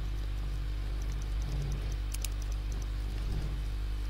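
Steady electrical hum with a background hiss from the recording setup during a pause in the talk. A short click about two seconds in.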